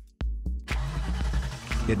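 Background music with a beat drops out briefly, then a car engine sound effect starts about half a second in and runs on under the music.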